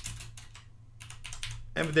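Computer keyboard typing: two short runs of keystrokes, about a second apart.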